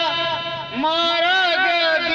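A voice chanting a devotional chant on long held notes that waver in pitch, with a short break for breath just under a second in.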